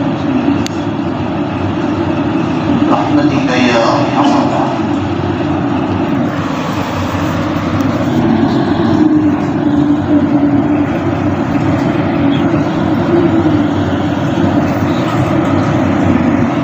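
Loud, steady background noise with a brief indistinct voice about three to four seconds in.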